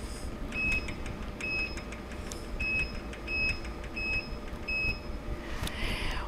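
Kinco touchscreen operator panel giving short, high key-press beeps as values are entered on its on-screen keypad, six beeps at uneven intervals over a steady low hum.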